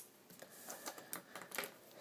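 Faint light taps and rustling of a sheet of paper being slid across a desk by hand, a handful of small clicks spread through the moment.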